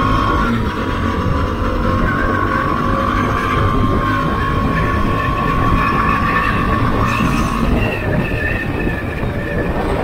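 Motorcycle ridden along a highway as it picks up speed: engine and road noise under a heavy rush of wind on the microphone. A thin steady high tone runs over it, rising slightly, and drops away about eight seconds in.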